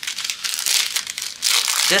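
Plastic packaging crinkling as it is handled, a dense run of fine crackles.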